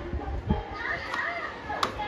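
Toddlers' high voices babbling and squealing as they play, with a sharp click near the end.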